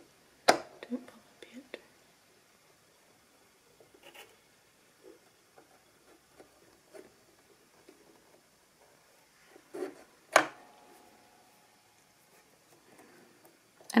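Quiet handling of a Singer Heavy Duty sewing machine's automatic needle threader and thread, with faint small ticks. A sharp click comes about half a second in, and a louder click with a brief ring comes about ten seconds in.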